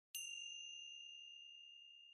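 A small meditation bell struck once just after the start, ringing on with one clear high tone that slowly fades, marking the opening of a guided meditation.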